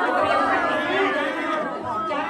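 A group of women chattering, several voices overlapping at once.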